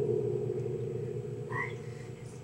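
Creepy piano chord used as a horror sting, ringing on and slowly fading away.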